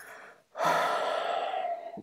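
A person breathes in softly, pauses briefly, then lets out one long, fairly loud breath close to the microphone that fades toward the end.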